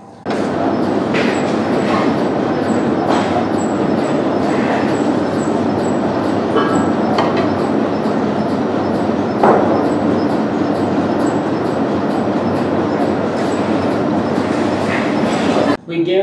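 Laboratory water bath running at 42 °C during a heat shock, a loud, steady mechanical noise, with a few sharp knocks as tubes are handled in it.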